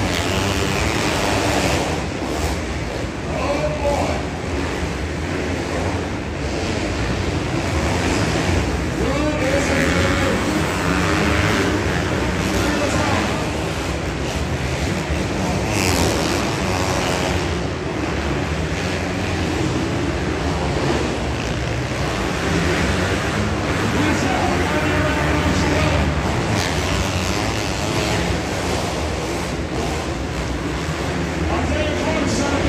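Several motocross bikes revving and running around an indoor arenacross track, their engine notes rising and falling over steady, echoing arena noise.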